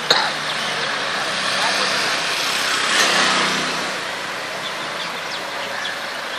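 Steady road traffic noise from passing cars, swelling briefly about three seconds in, with a short click right at the start.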